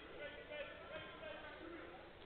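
Faint, indistinct voices in the background: low murmur of talk in a quiet gym, with no clear words.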